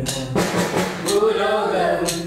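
A mixed group of young men and women singing a Christmas carol together, with sharp clap and drum strikes keeping a steady beat about twice a second.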